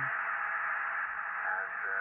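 Steady receiver hiss and band noise from the speaker of an ICOM IC-575A transceiver, heard while the radio is tuned through 11 m and back to 10 m. The noise is narrow-band and sits in the upper voice range, typical of an SSB receiver with no station on frequency.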